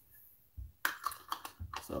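A quick run of small, sharp plastic clicks and clatters from a battery-powered camping lamp being handled, starting about a second in.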